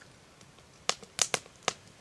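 Quiet background broken by about five short, sharp clicks, clustered from about a second in until near the end.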